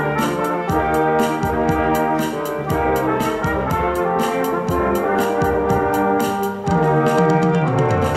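Small brass group of trumpets and trombone playing a lively tune over a steady beat from an electronic drum kit. Near the end a low note slides downward, like a trombone glissando.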